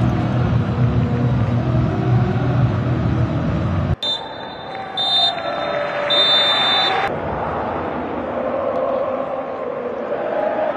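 Referee's whistle blowing full time: three blasts, two short and a longer last one, over stadium crowd noise, which carries on after the whistle.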